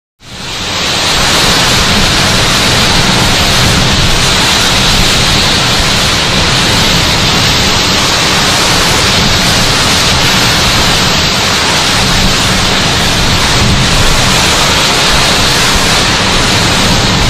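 Storm-force wind and heavy rain, a loud, steady rush of noise that fades in within the first second.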